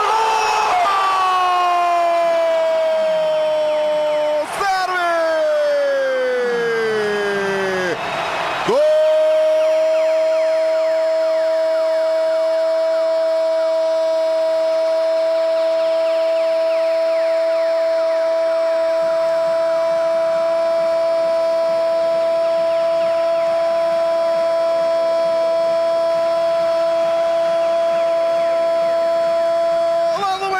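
A football radio commentator's goal shout: two cries that fall in pitch, then one very long 'goooolo' held on a steady pitch for about twenty seconds.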